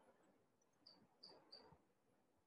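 Near silence: room tone, with three faint, brief high-pitched chirps about a second in.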